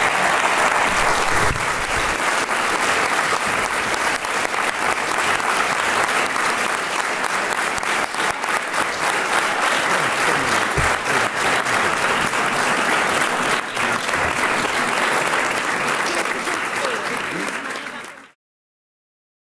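Large audience applauding steadily, a long sustained ovation of many hands clapping in a lecture hall.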